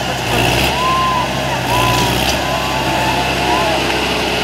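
Sonalika Tiger tractor's diesel engine running steadily under heavy load as it drags a tillage implement through deep sand, with voices from the surrounding crowd over it.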